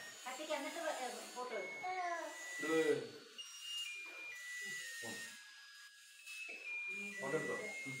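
Family members talking at a cake-cutting over a thin, high electronic tune: single beeping notes stepping up and down in pitch, one after another, as a musical birthday-candle chip plays.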